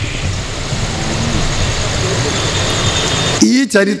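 Steady low engine rumble with hiss, like a motor vehicle running close by; a man's voice comes back in near the end.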